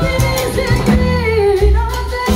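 A live salsa band playing, with a female lead vocalist singing a held, gliding melody line over bass, percussion and horns.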